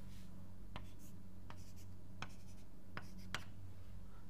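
Writing strokes: about five short, light taps and scratches spread over a few seconds, over a steady low hum.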